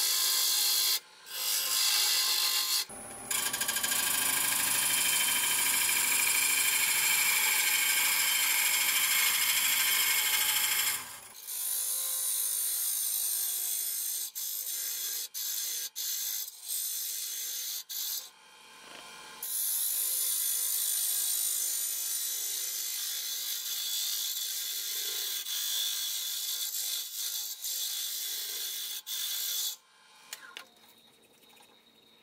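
Hollowing tool cutting the inside of an oak crotch hollow form spinning on a wood lathe: a continuous high scraping hiss of the cutter shearing wood, fuller from about three to eleven seconds in, broken by frequent short gaps.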